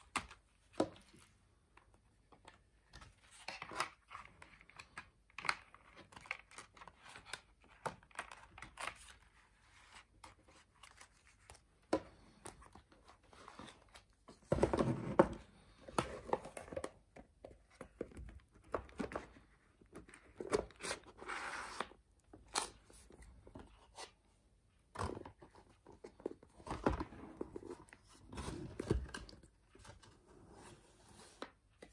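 A DVD box set being packed back into its cardboard slipcase by hand: its digipaks, plastic sleeves, paper booklets and postcards are rustled and slid into place, with scrapes and light knocks in irregular bursts. The loudest handling comes about halfway through.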